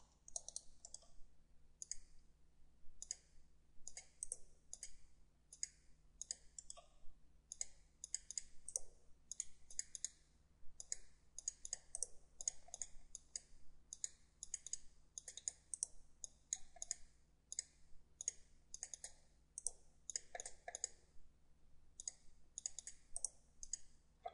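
Computer mouse buttons clicking repeatedly at an irregular pace, often two or three clicks close together, over a faint steady electrical hum.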